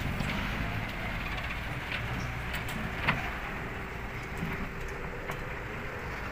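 Distant dump truck engine running steadily as the truck climbs a steep dirt road, heard as a low rumble mixed with outdoor air noise, with a brief click about three seconds in.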